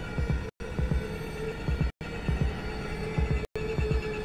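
Tense film score: low throbbing pulses, often in pairs like a heartbeat, under a steady held tone. The sound cuts out completely for a split second about every one and a half seconds.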